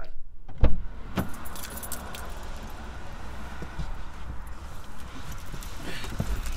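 Handling noises inside a parked car: two heavy thumps near the start, then scattered light clicks and jingles over a steady hiss and low rumble.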